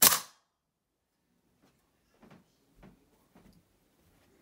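A slingshot-fired 8.4 mm lead ball striking a hanging drink can: one sharp crack right at the start that rings out briefly. A few faint knocks follow between about two and three and a half seconds in.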